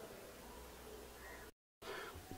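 Very quiet, even background hiss, broken by a short dropout to dead silence about one and a half seconds in.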